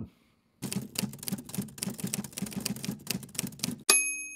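Typewriter sound effect: a rapid run of key clacks, about eight to ten a second, ending near the end with a single ringing bell ding.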